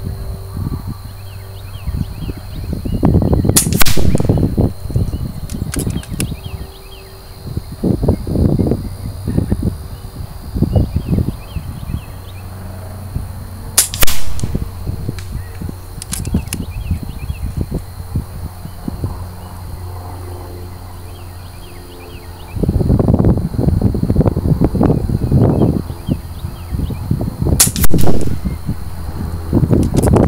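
Three shots from a .22 calibre FX Dreamline PCP air rifle with a 700 mm slug liner, firing 17.5-grain slugs. Each shot is a sharp crack, and they come about ten seconds apart.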